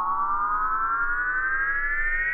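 Synthesized riser sound effect for a countdown: one buzzy electronic tone gliding steadily upward in pitch without a break, over a low steady drone.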